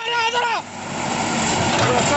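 A Case 770 backhoe loader's engine running with a steady hum, over the rush of water spilling over a weir. A voice calls out briefly at the very start.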